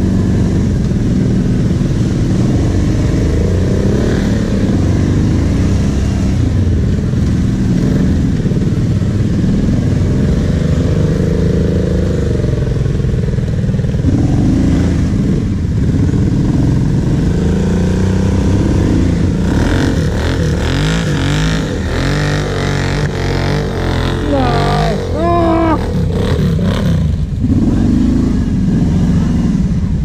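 Kawasaki Brute Force 750 V-twin ATV engine running under changing throttle as it rides through mud, its note rising and falling, with the engine of a second quad close ahead.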